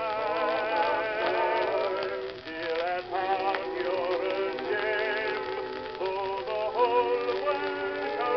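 Music from a 1920 acoustic-horn recording played from a Columbia 78 rpm shellac disc: several pitched parts with a wavering vibrato, and a narrow, muffled sound with no high treble.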